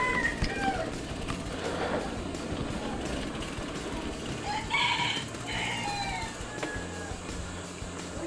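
A rooster crowing about five seconds in, one call in two parts.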